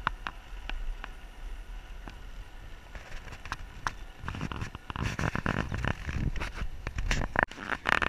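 Bicycle rattling over rough, cracked asphalt while climbing: a run of sharp clicks and knocks over a low wind rumble, growing denser and louder about halfway through.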